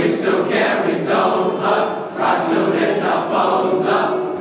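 A large group of male voices singing together loudly as a choir, in steady sung phrases with a short break between phrases about halfway through.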